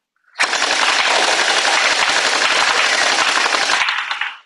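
CAISSA G36 electric gel ball blaster firing one full-auto burst of about three and a half seconds, a rapid, fast-cycling rattle that starts about half a second in and stops just before the end.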